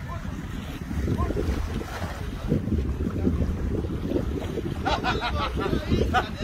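Wind buffeting a phone microphone, a steady irregular rumble, with voices coming in near the end.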